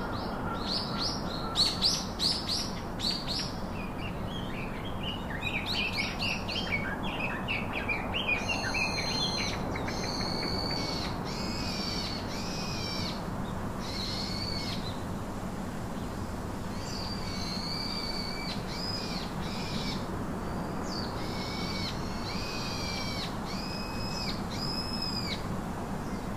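Birds calling over a steady background hiss: a flurry of quick high chirps in the first several seconds, then a run of short arched whistled calls, about one a second, with a brief pause midway.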